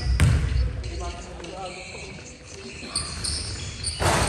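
A basketball bounced once on a hardwood gym floor about a quarter second in, the last dribble of a free-throw routine.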